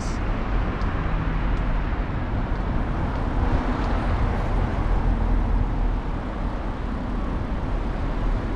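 Road traffic going by on a street, heard through a steady rush of wind on the microphone of a camera carried on a moving bicycle; a car passes with a slight swell about halfway through.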